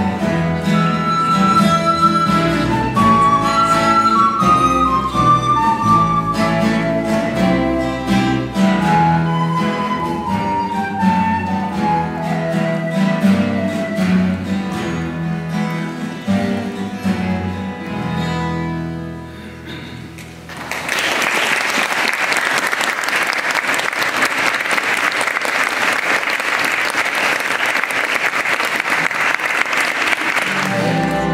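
A small acoustic folk band plays a recorder melody over strummed acoustic guitar and double bass; the music ends about two-thirds of the way in and an audience breaks into steady applause.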